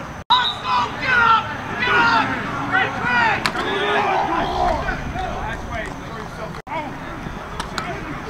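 Football players and coaches shouting, whooping and talking over one another on a practice field, loudest in the first half, with one sharp knock about three and a half seconds in. The sound drops out for an instant twice where the footage is cut.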